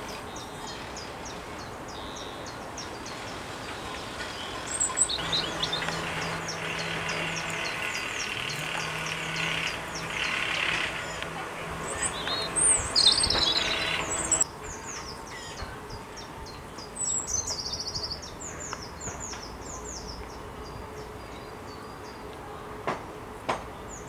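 European robin singing: phrases of high, thin notes over rapid, constant chirping. A steady low hum runs from about five seconds in and cuts off abruptly about fourteen seconds in.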